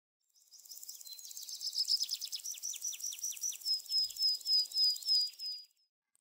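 A bird chirping: a run of quick, high chirps that starts faint, grows louder, and settles into a steady string of about three notes a second before stopping near the end.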